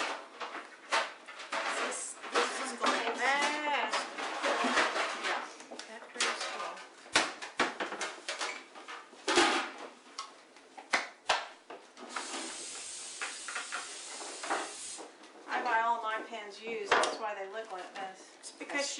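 Metal baking sheets and pans knocking and clattering on a countertop, with about three seconds of steady hiss from an aerosol cooking spray being sprayed onto a baking sheet a little past the middle.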